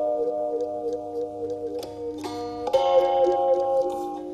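Gentle instrumental background music: held chords under a quickly repeated plucked note, the harmony shifting about two seconds in and again near three seconds.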